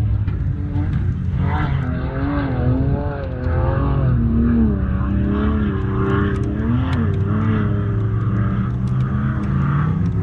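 A 4x4's engine revving under load as it climbs a sand dune, its pitch rising and falling over and over from about a second and a half in, over a steady low rumble.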